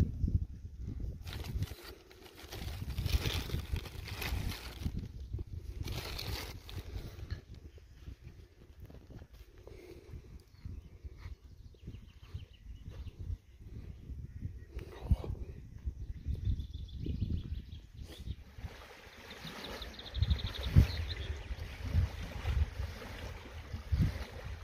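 Wind buffeting the microphone as a fluctuating low rumble, with scattered rustles and knocks from handling, a few of them louder near the end.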